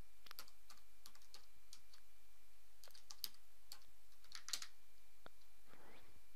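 Faint typing on a computer keyboard: irregular keystrokes, some in quick runs and some single, as a shell command is typed.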